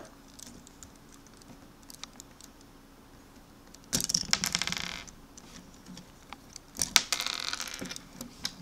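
Small plastic Lego pieces clicking and clattering as a flick-missile launcher is handled. Light scattered clicks, with two bursts of rapid clatter about a second long: one about four seconds in and another near the end.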